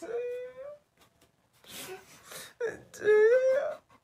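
A young man crying: a short wail, then breathy sobbing, then a longer wavering wail.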